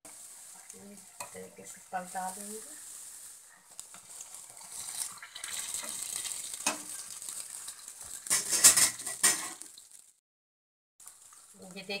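Malpua batter deep-frying in medium-hot oil in a kadhai, sizzling steadily, while a perforated metal slotted spoon stirs and presses it in the pan. About eight seconds in, a loud stretch of scraping and clinking of the spoon against the pan, then the sound cuts out for about a second.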